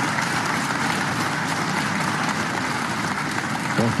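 Snooker arena audience applauding a shot: steady clapping.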